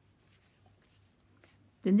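A thick paper journal page being turned by hand: a faint papery rustle with a few soft ticks.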